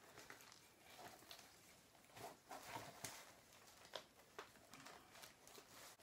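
Near silence with a few faint rustles and small clicks from an orchid being handled in its clear plastic pot, spread through the middle few seconds.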